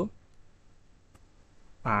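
Two faint computer-keyboard keystrokes during a pause in speech, followed near the end by the start of a man's voice.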